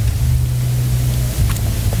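A steady low hum, with a faint click about one and a half seconds in.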